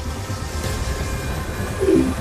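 Cartoon soundtrack of a magic portal effect: a steady low rumble under background music, with a short falling tone near the end as a glowing portal bursts open.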